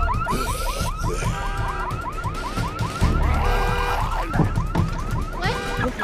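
An RV's anti-theft alarm sounding after its door is tried. It switches back and forth between fast rising chirps, about five a second, and short stretches of a steady multi-tone wail.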